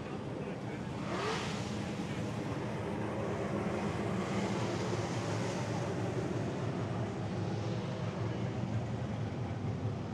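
Drift cars' engines idling in a lineup: a steady low engine rumble.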